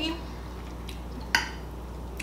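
A single sharp clink of a metal fork against a plate about a second and a half in, over a steady low hum.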